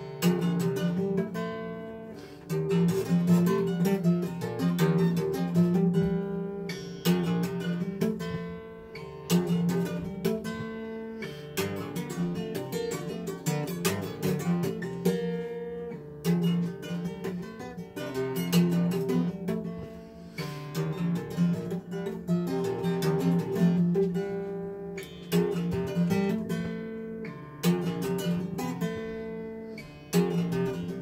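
Instrumental jazz piece played on acoustic guitar: plucked notes and strums over sustained low notes, with no vocals.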